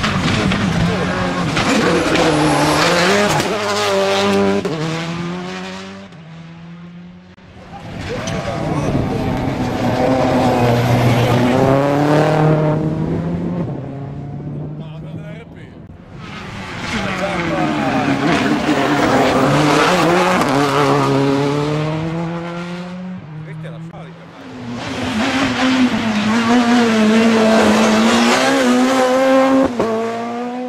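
Rally cars' engines revving hard as they pass at speed, four passes one after another, the pitch climbing and dropping in steps with the gear changes.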